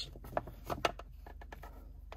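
Braided rope being pulled and worked by hand to tighten a knot: a few faint rubbing ticks in the first second, then soft handling noise.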